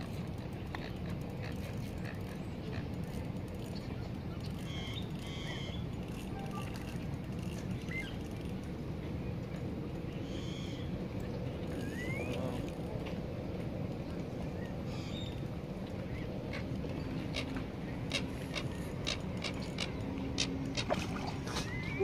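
Steady low outdoor rumble with a few faint bird chirps, and a run of light clicks near the end.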